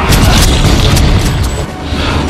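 A loud cinematic boom right at the start, with a few sharp cracks in the first half second, over dramatic action-film music and a low rumble.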